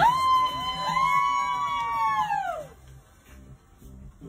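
Two high, held party whoops, one starting right away and a second joining about a second in, both sliding down in pitch and dying out about two and a half seconds in. Quieter music with a beat runs underneath.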